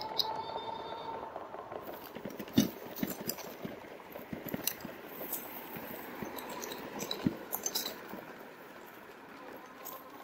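Rad Power Bikes RadMini Step-Thru electric fat-tire bike rolling over bumpy grass, its frame, front rack and basket giving irregular clinks, rattles and knocks as it jolts. A faint steady whine fades out in the first two seconds.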